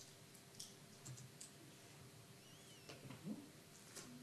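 Near silence: faint scattered clicks and light handling of paper sheets, with a faint short chirp about two and a half seconds in.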